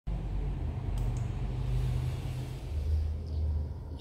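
A low, steady rumbling drone that drops to a deeper pitch about two-thirds of the way through.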